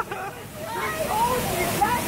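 Rushing, splashing water around a river-rapids ride raft, with riders laughing and shrieking over it.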